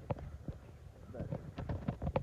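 A few footsteps on the yard ground as a man walks, then he begins to speak.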